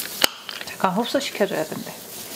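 A single sharp plastic click, a roller attachment being snapped onto a Meditherapy Sok Sal Spin massager body, followed by light handling of the plastic parts.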